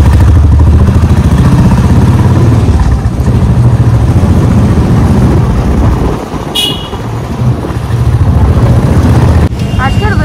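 Loud low rumble of riding on a motorcycle or scooter: the engine and wind buffeting the microphone as it moves. A short high-pitched horn toot sounds about six and a half seconds in.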